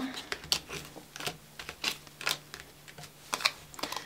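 Oracle cards being handled and laid out on a table: a string of light, irregular clicks and taps of card edges against the deck and the tabletop.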